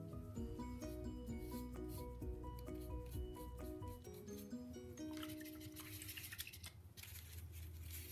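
Soft background music, a light melody of short repeated notes. About five seconds in, faint scratchy rubbing of a paintbrush on paper comes in over it.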